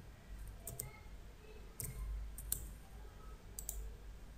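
Faint computer keyboard keystrokes and a mouse click: about six separate short clicks, spaced out, as a query is finished and run.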